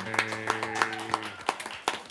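A small group clapping unevenly, with a drawn-out cheer of "yay" held over the claps that stops about one and a half seconds in.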